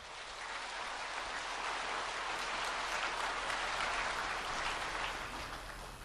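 A large audience applauding; the applause swells and then dies away toward the end.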